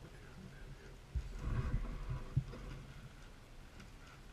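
A plastic bag being handled on a wooden table: rustling and a run of dull thumps, loudest in the middle, with one sharper knock about two and a half seconds in.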